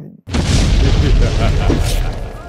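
A deep, loud boom sound effect of a show's title sting, cutting in abruptly about a quarter second in and rumbling on.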